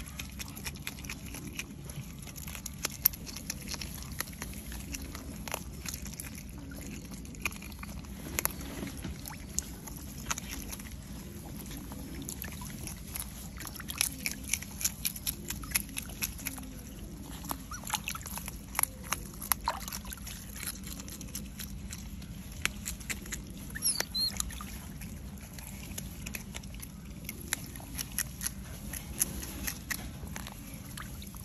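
Smooth-coated otter eating fish, with many sharp crunching and clicking chewing sounds, over water sloshing in a metal basin of small fish.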